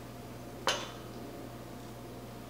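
A single sharp metallic clink against a stainless steel mixing bowl about two-thirds of a second in, as a boiled potato is cut by hand with a knife over the bowl. A steady low hum runs underneath.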